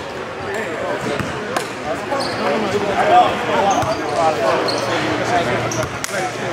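Several players' voices talking over one another in a gym, with a few sharp thuds of a basketball bouncing on the court.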